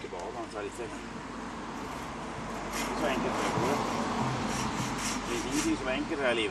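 Hand sawing into wood with an old wooden-framed bow saw tensioned by a cord, its rasping strokes growing louder from about halfway through.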